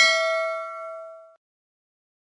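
Notification-bell sound effect: one bright bell ding, ringing with several tones. The higher tones fade first, and the whole ring dies away within about a second and a half.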